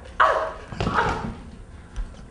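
A man's voice giving two short, loud, harsh shouts, less than a second apart, then dying away.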